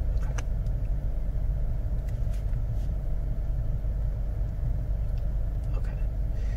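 Steady low rumble of interview-room background noise, with a few faint clicks.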